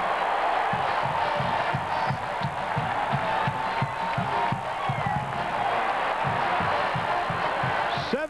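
A stadium marching band playing with a steady drum beat over a cheering crowd after a touchdown.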